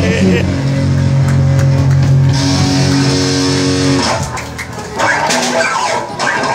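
Live black metal band's distorted electric guitars holding a sustained chord that cuts off about four seconds in, followed by voices.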